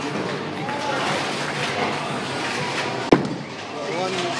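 Bowling alley background noise with distant voices, and one sharp knock about three seconds in.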